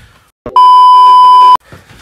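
A single loud, steady censor bleep: one high pure beep tone lasting about a second, starting and stopping abruptly about half a second in.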